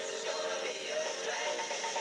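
A pop song playing in the background: a short snippet of a number-one hit.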